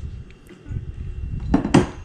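Metal parts clinking and knocking against each other and the bench as a steel sprag bearing ring and a motorcycle chain sprocket are handled and set down, with a few light clicks first and a louder clatter about a second and a half in.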